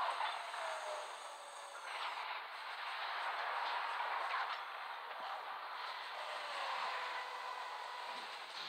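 Film sound effects of a planet-sized robot transforming: a continuous grinding, clattering din of huge metal parts shifting and locking, opening with a sharp clank.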